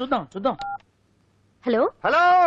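A short two-tone telephone beep, like a touch-tone key, about half a second in, as the first call to a studio phone line comes through; brief speech before and after it.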